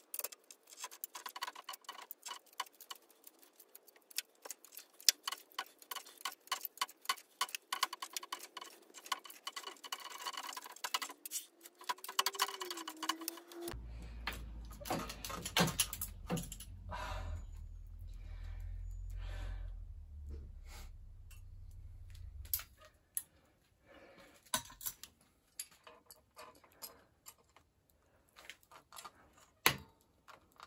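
Rapid small metallic clicks and rattles from an old steel road bike's headset and fork being worked loose by hand. About halfway in, a low rumble lasts around eight seconds, followed by scattered clicks.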